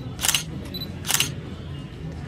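Camera shutter clicks, twice, about a second apart.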